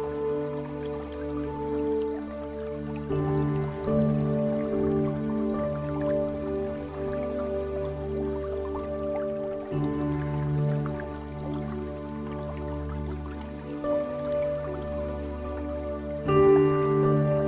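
Slow ambient music of long-held chords that change every few seconds, with water dripping over it.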